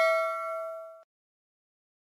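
A bell-like ding sound effect from a subscribe-button animation, ringing on with several tones and fading away, dying out about a second in.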